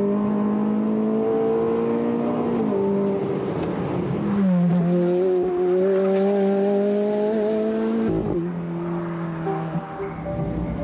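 Ferrari F430's V8 engine running hard under load, its pitch climbing slowly and falling back sharply about three seconds in, again around four and a half seconds, and near eight seconds.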